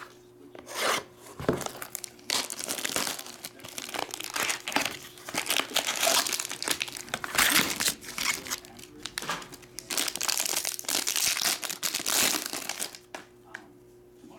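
Foil wrapper of a Topps Star Wars Masterwork trading-card pack being handled and torn open by hand: a long run of crinkling and tearing, loudest in the middle, that stops about a second before the end.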